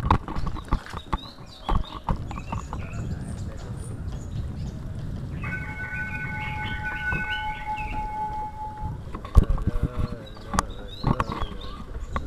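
Knocks and rattles over a steady low rumble from a moving camera rig, clustered near the start and again near the end. In the middle a steady high tone holds for about three seconds and then stops.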